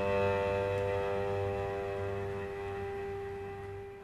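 A Corsican male a cappella polyphonic choir holding a final chord of several steady voices, which slowly fades away.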